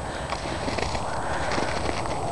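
Footsteps in snow: a few soft, irregular steps over steady background noise.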